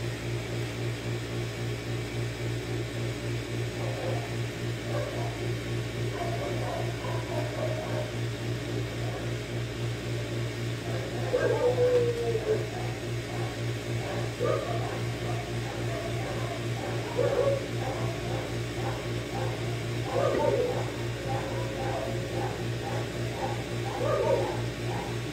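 A steady low electrical hum, with short animal calls breaking in now and then, the clearest a brief falling call about halfway through and others near 17 and 20 seconds.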